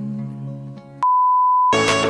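Soft held music fades out, then a loud, steady single-pitched electronic beep near 1 kHz sounds for under a second, like a censor bleep. It cuts off straight into brighter music with a steady beat.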